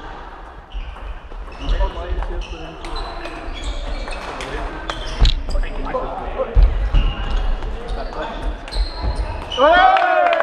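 Table tennis rally: the ball clicking quickly back and forth off the bats and table, with players' feet thumping and squeaking on the hall floor. A loud, sharp pitched cry near the end.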